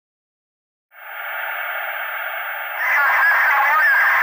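A hiss like radio static, confined to the middle frequencies, fades in about a second in. Near three seconds it grows louder and brighter, with wavering tones running through it.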